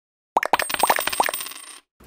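Coin-drop sound effect on a logo animation: a rapid run of metallic clinks that crowd closer together and fade away, like a coin rattling to rest, starting about a third of a second in and dying out just before the end.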